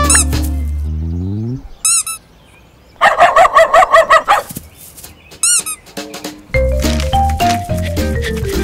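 Cartoon music ends on a rising slide. Cartoon bird chirps follow: a short chirp about two seconds in, a rapid run of chirps a second later, and another chirp near the middle. The music comes back near the end.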